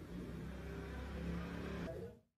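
A low, steady motor rumble with a faint hum, like a motor vehicle's engine running.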